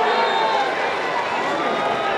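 Football stadium crowd: many voices shouting and talking over one another at a steady level, with no single clear speaker.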